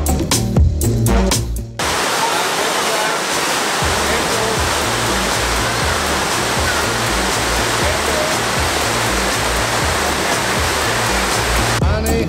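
Background music with a beat for about the first two seconds. Then the steady rushing of Catawba Falls, water pouring over rocks, takes over with the music's bass faintly underneath. The music returns at the very end.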